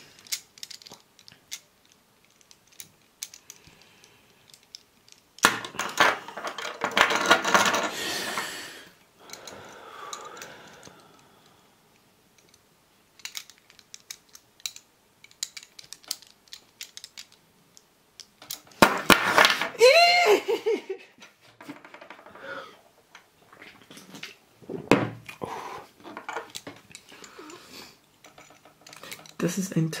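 Light clicks and taps of a Hanayama cast-metal puzzle's pieces and balls knocking together as it is turned in the hands. A man makes wordless vocal sounds twice: a longer loud stretch about six seconds in, and a short voiced sound that falls in pitch about twenty seconds in.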